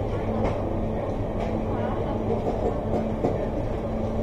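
Steady low hum of a busy shop interior, with indistinct chatter of people and a few light clicks.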